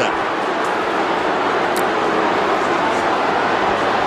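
Large football stadium crowd cheering in a steady, continuous mass of noise.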